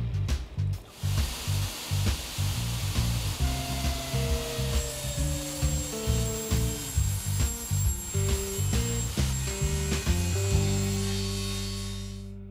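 Rhythmic background music over a power saw cutting wood. The cutting noise stops about ten seconds in, and the music ends on a held chord that fades out.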